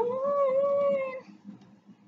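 A woman singing a cappella, holding a long steady note on "down" that ends a little over a second in.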